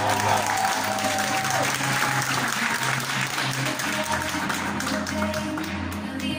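Audience applauding over music, the clapping thinning out and stopping near the end while the music carries on.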